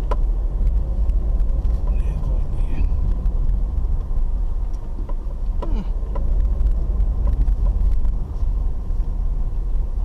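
Car driving slowly over a rough dirt road, heard from inside the cabin: a steady low rumble with frequent small knocks and rattles as the car goes over bumps.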